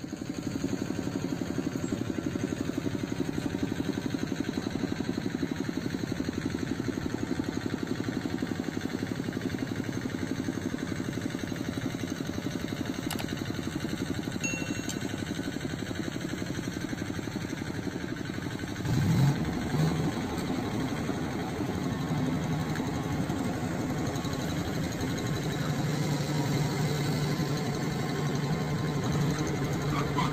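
Rice combine harvester's engine running with a fast, even chugging. About nineteen seconds in it surges briefly louder, then holds a stronger, steady low hum.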